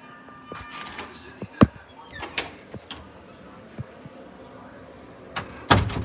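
A few scattered knocks and rustles, the sharpest about a second and a half in and a loud clatter just before the end.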